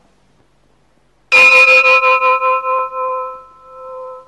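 A metal bell struck once, about a second and a half in, ringing on with several clear tones that fade slowly with a wavering beat.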